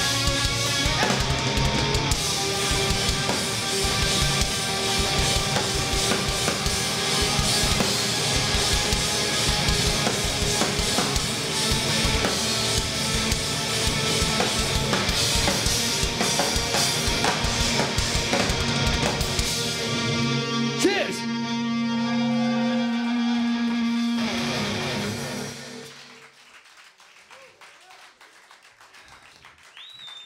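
Live rock band playing loud: drum kit, electric guitars and bass with sung vocals. About two-thirds of the way through the drums stop, a final chord is held for a few seconds and then cuts off, leaving it much quieter.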